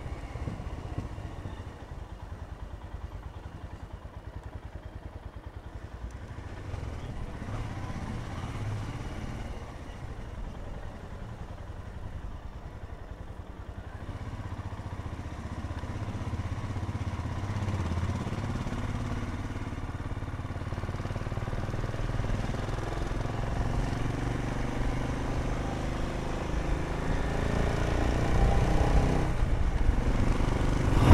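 Royal Enfield Himalayan's single-cylinder engine running while the motorcycle rides along at town speed, heard from the rider's seat. It grows steadily louder over the second half.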